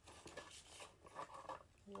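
Faint rustling and light clicks of a small cosmetics package being opened by hand and a concealer tube taken out.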